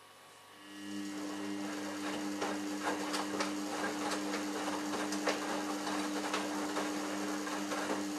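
Samsung Ecobubble WF1804WPU front-loading washing machine turning its drum in the wash. The motor starts about half a second in and runs with a steady two-note hum, while the laundry and water swish and knock as they tumble.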